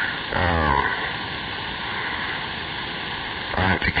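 CB radio receiver on channel 6 (27.025 MHz) giving a steady hiss of static between spoken words. A short word comes through just after the start, and a voice returns near the end.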